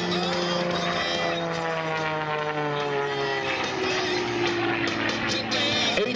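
Extra 300 aerobatic plane's 300 hp Lycoming flat-six engine and propeller droning, falling steadily in pitch over the first few seconds and then holding steady as the plane pulls up into a vertical climb.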